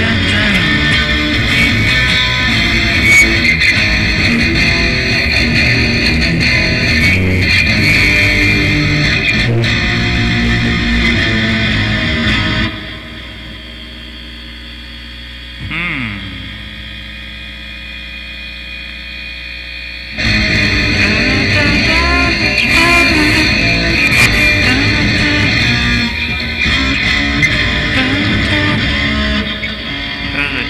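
Guitar music playing loudly. About halfway through it stops for several seconds, leaving only a low steady hum and a single note that slides down in pitch, then the full playing comes back.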